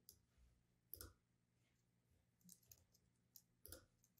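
Near silence with a few faint computer mouse clicks: one about a second in, then several more near the end.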